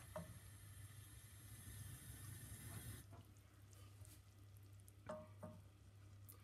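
Near silence: faint room tone with a low steady hum and a soft hiss that fades out about halfway through, then two soft knocks a moment apart near the end.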